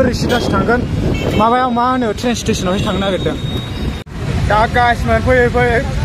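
A man talking over low wind rumble on the microphone and street traffic noise while cycling; the sound cuts off abruptly about four seconds in and the talking resumes.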